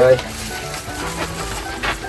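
A clear plastic bag crinkling and rustling as a hand digs food out of it, an irregular crackling hiss with a sharper crackle near the end.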